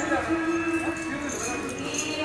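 A voice chanting in long, held notes, like a Hindu mantra recitation, with a few faint clicks over it.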